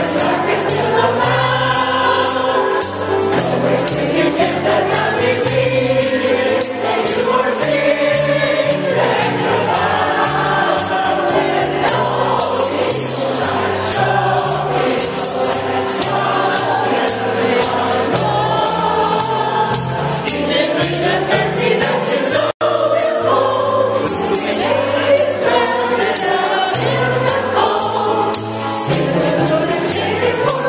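Group of voices singing a gospel song over an even, rhythmic beat that sounds like a tambourine. The sound cuts out for an instant about three-quarters of the way through.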